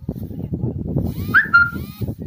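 A short, high-pitched call that rises and then holds for about half a second, a little over a second in, over continuous low rumbling noise.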